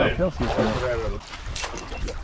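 A man's voice briefly, then wind rumbling on an action-camera microphone over water moving around people kneeling in the shallows, with a short noisy burst about a second and a half in.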